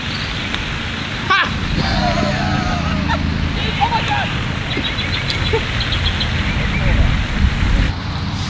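Outdoor background: a steady low rumble and hiss, with faint distant voices and a few short high chirps in the middle.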